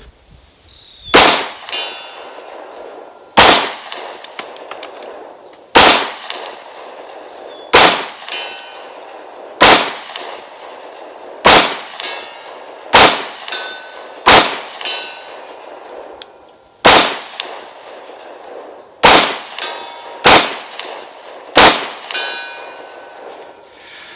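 Twelve single shots from a 9mm pistol fired at a slow, deliberate pace, about one to two and a half seconds apart. Each crack is followed by a short ringing tail.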